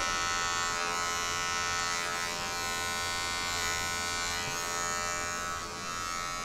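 Electric hair clipper with a number two guard, buzzing steadily at an even pitch as it cuts hair on the side of the head.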